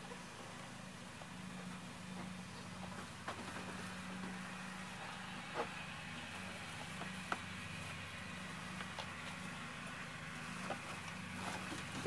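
A steady low hum, with a few faint clicks and taps.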